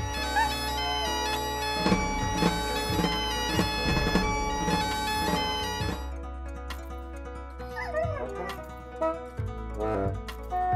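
Bagpipes playing: a long held high chanter note over steady low drones for about six seconds, then softer playing with some sliding notes.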